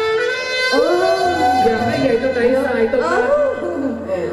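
Live Thai ramwong band music with a voice singing in long, wavering held notes.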